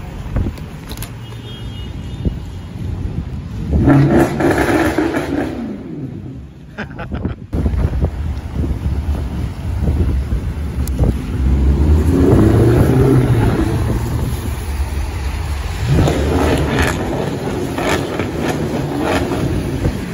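Performance cars pulling away and passing along a wet city street, their engines revving in several loud swells over the hiss of tyres on the wet road. The longest, heaviest pass comes around the middle, with others a few seconds in and near the end, and the sound cuts off suddenly once, about seven seconds in.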